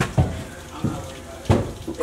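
A few dull knocks or thumps, roughly two thirds of a second apart, the last one the loudest.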